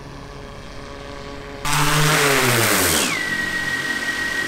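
Large quadcopter drone's propellers: a loud rush comes in suddenly about one and a half seconds in, its pitch sliding steadily down, then settling into a steady high whine.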